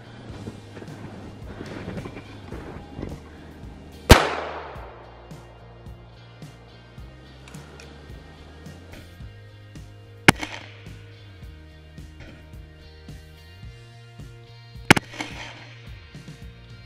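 .410 shotgun shots over background music. The first, about four seconds in, is the loudest and echoes away for a second or two. A shorter, sharper report follows about six seconds later, and a quick double crack comes near the end.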